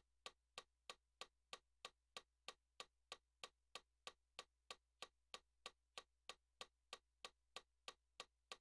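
Metronome clicking at a steady tempo, about three clicks a second, faint, over a low steady hum: the count-off before the keyboard playing starts.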